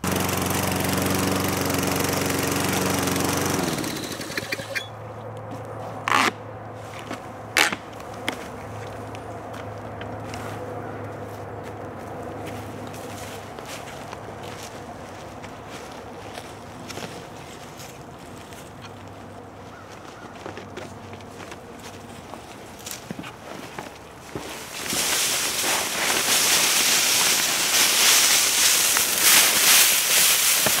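Gasoline walk-behind lawn mower running while pushed over dry fallen leaves to bag them, loud for the first few seconds and then fainter and steady, with a couple of sharp knocks. Near the end comes a loud rustling rush: the bagged leaves are dumped into a pallet compost bin as its carbon layer.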